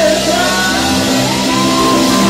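A live rock band playing loud: electric guitars, drum kit, keyboard and trumpet, with a lead vocal.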